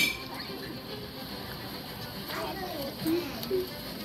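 A sharp click right at the start, then faint voices in the background with a couple of short voiced sounds near the end.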